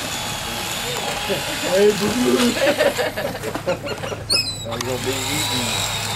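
People talking indistinctly over a steady low drone from the boat's engine, with a brief high-pitched sound about four seconds in.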